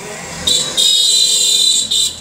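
Loud, high-pitched electronic alarm buzzer sounding one continuous tone. It starts about half a second in and breaks off briefly near the end.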